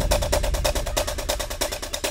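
Background music, an action-style track: a fast, even percussive pulse of about eight hits a second, with the bass thinned out and the level falling.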